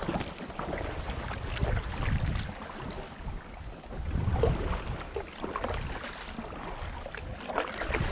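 Canoe paddle strokes, the blade dipping and splashing in calm water again and again, with wind buffeting the microphone in uneven gusts.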